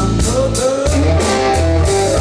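Live electric blues band playing: electric guitar over a drum-kit beat and a heavy low end.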